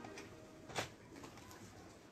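Quiet room tone with one sharp click a little under a second in.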